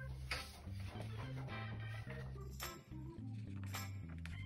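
Background music with a low bass line that moves from note to note.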